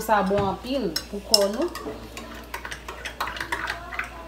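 A metal spoon stirring a drink in a drinking glass, clinking lightly and repeatedly against the glass.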